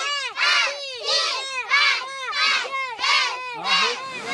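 Group of Maasai schoolchildren chanting a classroom recitation in unison, a loud chanted word about every two-thirds of a second.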